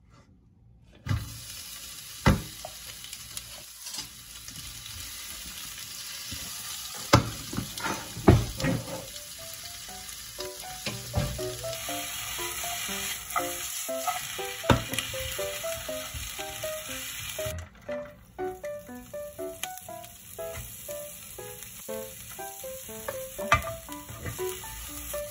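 Sliced onions sizzling as they drop into hot oil in a nonstick wok and are stir-fried, with a few sharp knocks against the pan. Background music with short plucked-sounding notes comes in about halfway through.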